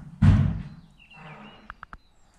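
Heavy footsteps on the decayed floor of a derelict building: a loud thud about a quarter second in, fading out over half a second, then faint scraping and three light clicks near the end.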